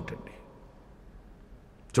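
A short pause in a man's speech: a brief faint breath-like noise just after it starts, then quiet room tone until his voice comes back at the very end.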